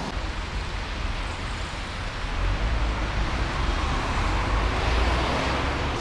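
Steady traffic noise from a busy city road, a continuous low rumble with a hiss of passing cars that swells a little midway through.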